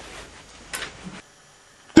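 Quiet room tone with a brief soft rustle a little under a second in, dropping abruptly to near silence about a second in; a man's voice starts loudly right at the end.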